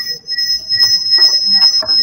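A steady, high-pitched electronic whine over the audio feed of an online call: interference on the line.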